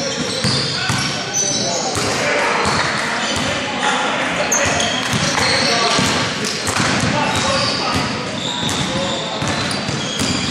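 Live basketball play on a hard gym court: the ball bouncing in repeated thuds, short high sneaker squeaks and players' voices calling out, all echoing in a large hall.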